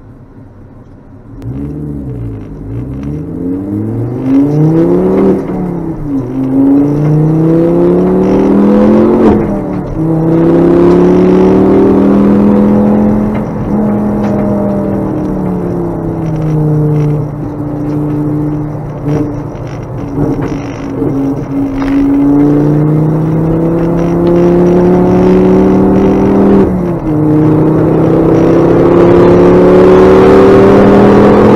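Ford Focus ST track car's turbocharged five-cylinder engine, heard from inside the cabin, pulling away about a second and a half in and accelerating hard. Its pitch climbs through each gear and drops sharply at several gear changes.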